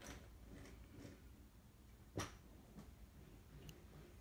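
Near silence: quiet room tone with a few faint ticks and one short, sharper click about two seconds in.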